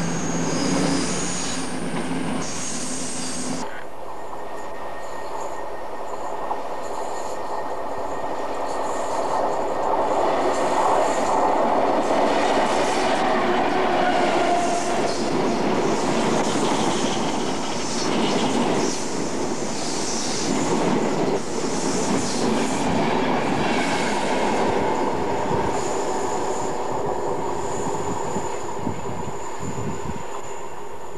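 Electric express passenger trains passing at speed on overhead-wired main-line track: a close train's running noise with steady tones cuts off abruptly about four seconds in, then another long train runs past with a continuous rush of wheel-on-rail noise and a faint high whine that swells and eases.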